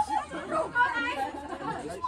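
Several people talking at once, their voices overlapping in indistinct chatter.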